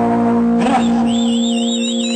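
Live rock band holding a sustained closing chord, electric guitar, bass and keyboard ringing steadily. A short hit comes about two-thirds of a second in, and a high warbling whistle joins about a second in.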